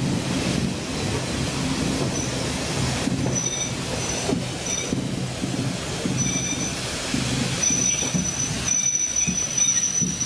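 Heritage railway carriage running slowly along the track with a low rumble from the wheels. A thin, high-pitched squeal from the running gear comes and goes from about two seconds in, then holds nearly steady near the end.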